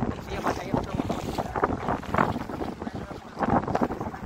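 Wind buffeting a phone microphone in gusts, with indistinct voices mixed in.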